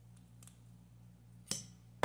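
Quiet room with a steady low electrical hum, a few faint ticks and one sharp click about one and a half seconds in.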